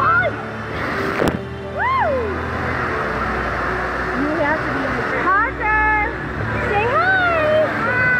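Indoor water park din: a steady rush of water under a babble of voices, with high voices calling out in rising-and-falling cries several times and one sharp knock about a second in.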